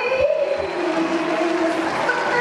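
Female voice singing through a microphone over backing music, holding long sustained notes.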